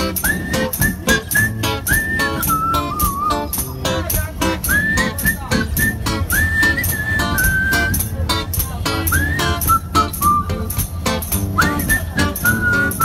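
A man whistling a melody into a microphone, with quick upward slides into held notes, over a steady fast beat of sharp percussive clicks.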